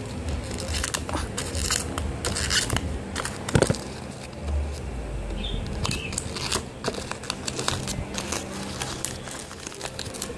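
Gift-wrapping paper crinkling and tearing as a small wrapped present is pulled open by hand, in irregular crackles with a louder snap about three and a half seconds in.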